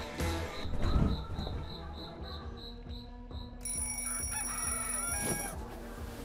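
Soft background music with a rooster crowing in the second half, a morning wake-up cue.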